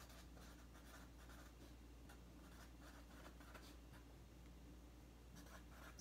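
Faint, irregular scratching of handwriting with a pen, as names are written out, over a low steady hum.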